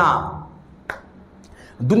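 A man's voice trails off, then a single sharp click comes about a second in, and speech starts again near the end.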